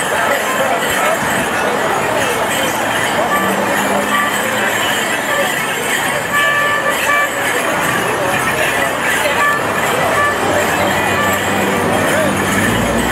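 Live folk tune played for Morris dancing, with short held notes, over crowd chatter and street noise.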